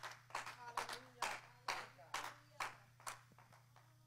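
Scattered hand clapping from a small congregation, a couple of claps a second, dying away after about three seconds, over a steady low electrical hum and faint voices in the room.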